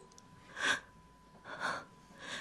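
A woman's heavy, audible breathing: two breaths about a second apart, the first the louder, acted as anguished, distressed breathing between despairing lines.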